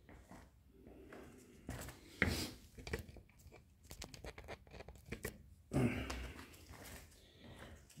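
Rustling, scuffing and light knocks of trail running shoes being handled and pulled onto the feet, with a sharper knock about two seconds in and a longer rustle around six seconds.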